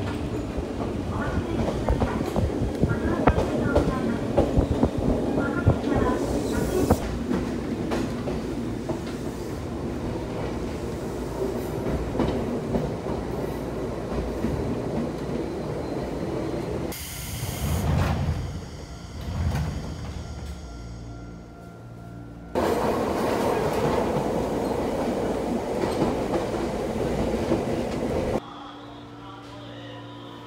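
A Nagano Electric Railway local electric train running, heard from inside the car: a steady rumble with wheel clicks over the rail joints. The sound cuts abruptly to other stretches of the run a few times and drops to a quieter level near the end.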